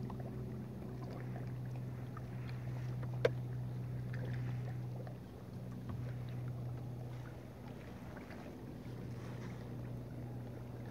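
Kayak paddle strokes dipping into calm water, soft splashes every couple of seconds, with one sharp knock about a third of the way in. A steady low hum runs underneath.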